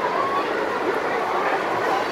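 Battery-powered Plarail toy train running along plastic track, a steady motor whir with light clatter, under background chatter.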